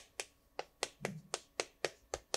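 Writing strokes clicking sharply on a green board, about four a second, as characters are written by hand.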